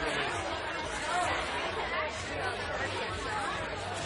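Low, indistinct chatter of several voices in a room, no single voice standing out, over a faint steady hum.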